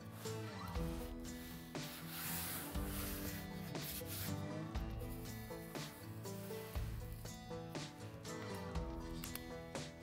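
Background music with a repeating bass line, over a hand rubbing and pressing a strip of Henry Blueskin VP100 self-adhered membrane onto a window's nail flange. The scratchy rubbing is plainest about two to three seconds in.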